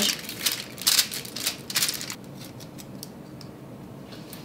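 Aluminium foil crinkling in a quick run of crackles as it is pressed and crimped around a dish, dying away about two seconds in.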